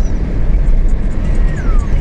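Car driving along a road, heard from inside: a loud, steady low rumble of road and wind noise, with a faint high tone falling in pitch near the end.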